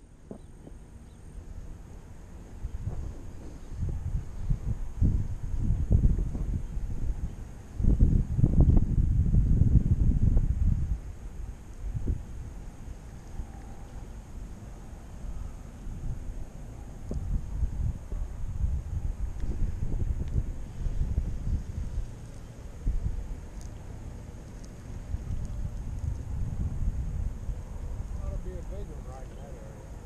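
Wind buffeting the microphone in gusts, a low rumble that swells and fades and is strongest about eight to eleven seconds in.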